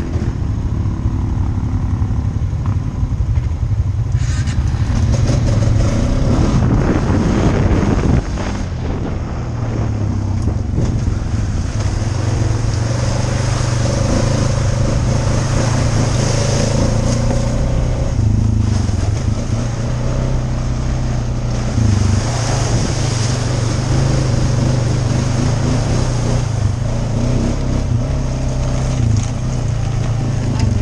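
ATV engine running close to the microphone, a steady hum whose pitch rises and falls a little now and then with the throttle.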